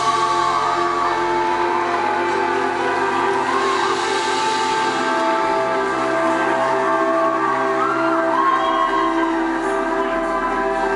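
Live band playing a slow passage of long held chords that change every few seconds, with a few whoops from the audience.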